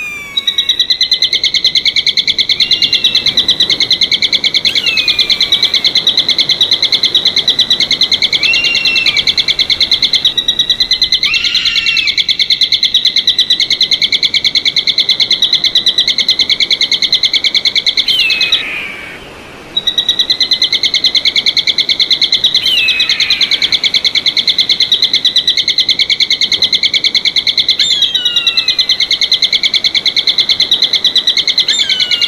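Bird calls: a high, fast-pulsing trill runs almost without a break, dropping out for about a second two-thirds of the way through. Over it, high whistled calls that slide downward come every few seconds.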